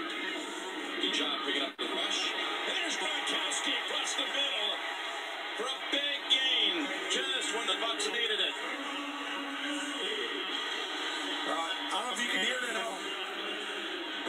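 Television broadcast audio of an NFL game played through a TV set's speaker: music and indistinct voices, with no clear commentary.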